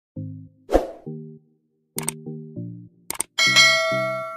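Subscribe-button animation sound effects over a short synth jingle: low plucked-sounding notes, a whoosh about a second in, two quick double clicks like a mouse button, then a bright bell-like notification ding that rings on, the loudest sound, near the end.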